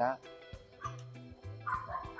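Faint background music with steady held notes, and short higher sounds about a second in and near the end.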